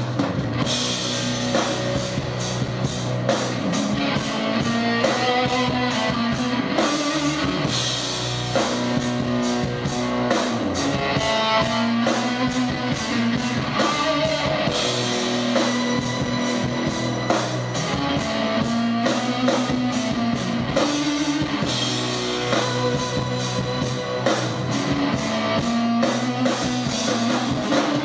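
Live rock band playing an instrumental passage: electric guitar over a drum kit keeping a steady beat, with no vocals.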